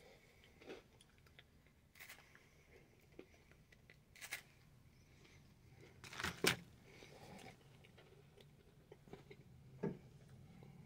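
Faint crunching of a crisp chocolate-covered wafer bar being bitten and chewed: a few scattered short crunches, the loudest about six seconds in.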